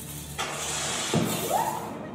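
A loud hissing rush starts about half a second in and lasts over a second, over the murmur of a crowd in a large hall. A low knock and a short rising voice-like call sound in its second half.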